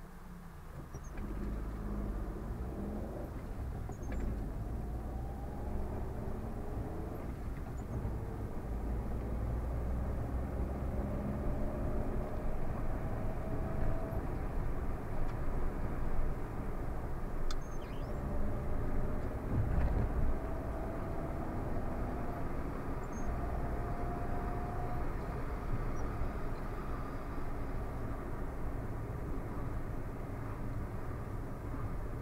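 A car's engine and tyre noise heard from inside the cabin as the car pulls away and drives on, getting louder about a second in. A whine rises in pitch several times as the car accelerates.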